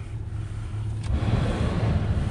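2016 Hyundai Sonata's engine idling with a steady low hum. About a second in the heater blower comes up, a rush of air from the dash vents that grows louder.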